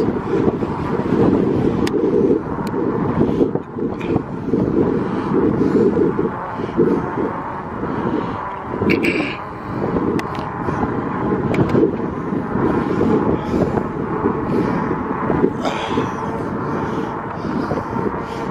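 Wind buffeting the camera microphone during an electric-bike ride, a loud, gusting low rumble throughout. A throat-clear about nine seconds in.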